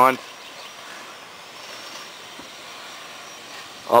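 Steady outdoor background noise, an even hiss with no distinct event.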